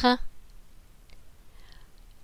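A woman's reading voice finishes a word right at the start, then a quiet pause holds only a few faint small clicks.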